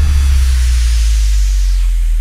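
Dramatic sound effect laid over a title card: a loud, deep, steady drone with a hiss on top that fades toward the end.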